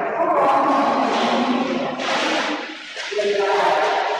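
Voices singing in long held notes, with a short break about three seconds in.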